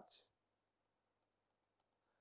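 Near silence with a few faint clicks of a stylus tapping on a tablet screen during handwriting.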